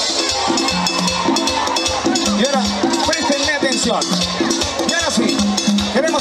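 Live cuarteto band playing loudly, with a bouncing bass line, steady percussion and voices over the top.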